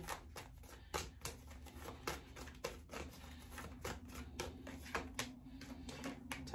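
A deck of tarot cards shuffled by hand: a quick, irregular run of soft card clicks and snaps.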